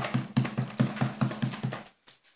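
A fast, even run of thumps or taps, about five a second, stopping shortly before the end.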